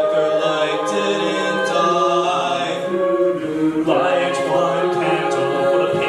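Mixed-voice a cappella group singing sustained chords behind a male soloist on a microphone, with vocal percussion keeping a steady beat. The harmony shifts about four seconds in.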